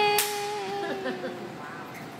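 A man's long, held triumphant yell, with one sharp hand-slap of a high-five about a fifth of a second in; the yell fades out after about a second and a half into brief scattered voices.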